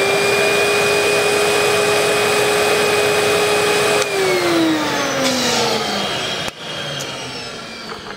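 Record cleaning machine's vacuum motor running steadily with a high whine as it sucks the washing fluid off the record. About four seconds in it is switched off and winds down with a falling whine.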